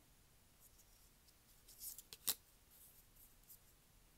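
Faint handling of thick plastic ID cards, with soft rustles and then one sharp click about two seconds in as a card is turned over.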